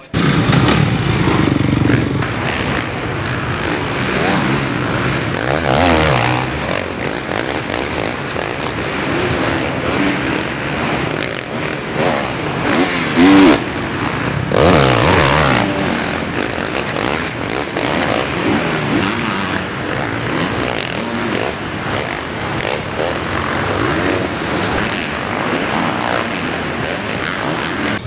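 Motocross bike engines revving and running on a dirt arenacross track, their pitch rising and falling as riders open and shut the throttle.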